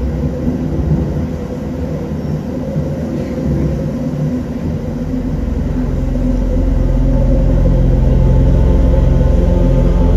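Live band music: a low, steady drone with a few held higher tones over it, swelling louder from about halfway in.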